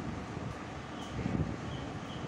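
Close-up chewing and mouth sounds of a person eating rice and okra by hand, picked up by a clip-on microphone, over a steady background noise.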